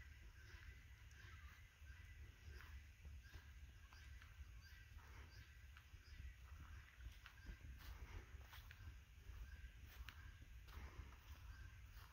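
Near silence: a faint low rumble with scattered faint clicks and a thin, steady high tone underneath.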